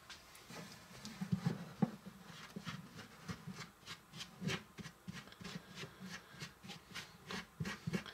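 A small spoon stirring peanut butter cookie mix with water and oil in a miniature mixing bowl: irregular light clicks and scrapes of the spoon against the bowl, a few each second, as the mix starts to form a dough.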